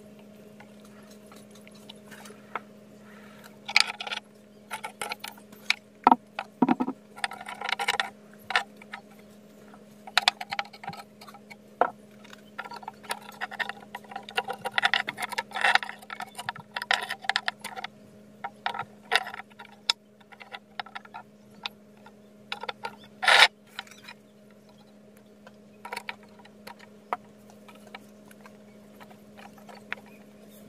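Porous volcanic rock pieces being handled and set onto a sand-strewn stone slab: irregular clicks, knocks and gritty scrapes of rock on rock and on sand, with one louder knock about three-quarters of the way through. A steady low hum runs underneath.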